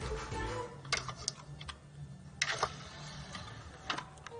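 Five-disc CD/VCD changer on a mini hi-fi system, its disc tray closing and buttons being pressed: about five sharp clicks spread across four seconds, over faint background music.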